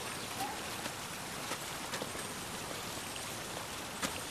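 Steady hiss of outdoor background noise through a camcorder microphone, with a few faint clicks about half a second, a second and a half and two seconds in.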